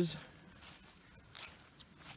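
A few faint scuffs and rustles of footsteps through dry leaves and grass, just after a spoken word ends.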